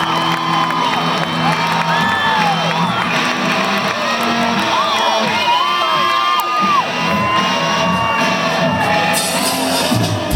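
Rock-concert crowd cheering, with long high screams and whoops wavering up and down in pitch over a steady low drone from the stage.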